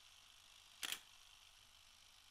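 Near silence, broken once by a single brief, sharp click-like sound just under a second in.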